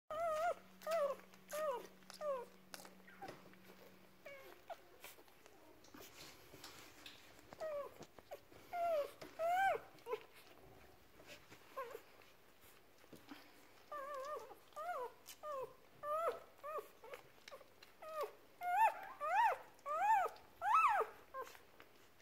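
Day-old German Spaniel (Wachtelhund) puppies crying at the teat. Their short, squeaky calls rise and fall in pitch and come in bursts, with quieter gaps between them.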